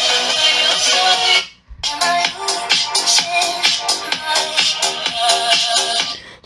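Electronic dance music with a steady beat playing from the loudspeaker of a Unihertz 8849 Tank 2 smartphone, heard in the room. The music cuts out for a moment about one and a half seconds in, then carries on.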